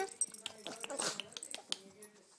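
A rapid, uneven run of sharp clicks, several a second, made to call a dog over.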